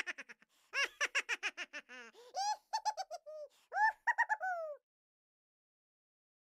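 High-pitched giggling in quick runs of short syllables, then a few longer falling notes, stopping abruptly about five seconds in.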